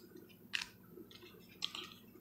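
Faint handling of glossy trading cards as one is slid off the stack: two short, soft scuffs, about half a second in and again near the end.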